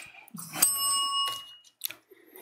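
A small bell rung once about half a second in, its clear ring fading away over about a second, marking the start of the show.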